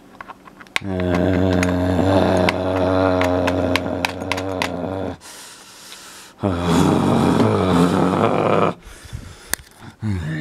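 A small machine's motor running in two bursts, a low steady hum with rapid clicking over it; the second burst is shorter and its pitch bends up and down.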